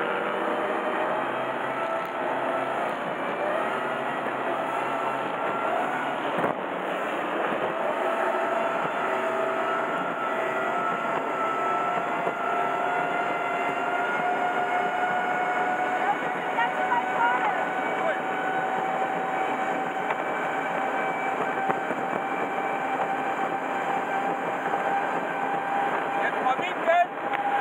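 A powerboat's engine running hard at speed, its note climbing slowly and steadily, over a loud rush of wind and water on the onboard microphone.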